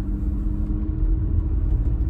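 Steady low rumble of a car engine and road noise heard inside the cabin while driving, with a faint steady hum that stops about halfway through.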